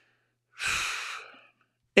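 A man's single breathy sigh, close to the microphone: one exhale of under a second, about half a second in, that fades out.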